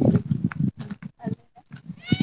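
Low rumble of wind buffeting a phone's microphone in the first moments, dying away to a few faint clicks and rustles.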